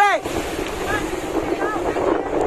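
Storm waves surging and breaking over a sinking boat, with wind blowing on the microphone: a steady rush of water and wind.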